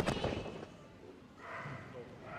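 A quick flurry of thuds and rattles as a border collie runs through a fabric agility tunnel near the microphone, loudest in the first half second, then fading.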